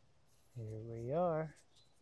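A man's short wordless vocal sound, like a hum, about a second long, its pitch rising and then falling.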